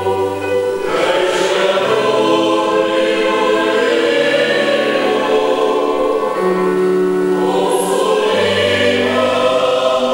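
Mixed choir of men's and women's voices singing together in long held chords that change every second or two.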